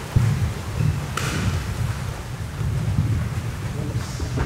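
Many bare feet moving, stepping and stamping together on a sprung wooden sports-hall floor: a continuous, uneven low rumble of footfalls and thuds, with a brief hiss about a second in.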